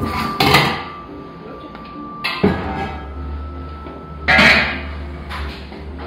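A large stainless-steel pot is handled against a wooden worktop while risen bread dough is tipped out of it: a knock and scrape about half a second in, another around two and a half seconds, and the loudest clatter just past four seconds. Background music plays under it.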